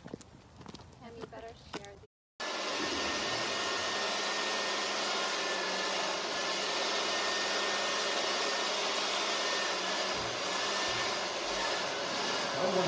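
Faint footsteps for about two seconds. Then, after a brief cut to silence, a handheld electric blower like a hair dryer runs with a loud, steady whoosh that does not change.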